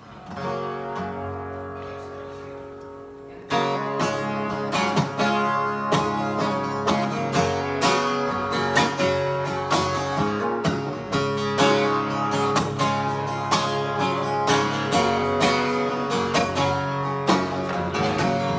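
Acoustic guitar played solo. A chord is struck and rings out, fading for about three seconds, then steady rhythmic strumming starts and carries on.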